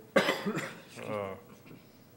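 A man's single loud cough just after the start, followed by a short spoken 'uh'.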